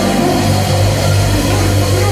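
Loud live worship band music with steady, sustained bass notes and held tones, continuing without a break.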